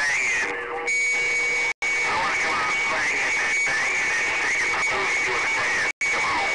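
CB radio receiver full of long-distance skip: loud static with garbled, overlapping distant voices and a steady high heterodyne whistle from about a second in. The audio cuts out for an instant a little before two seconds in.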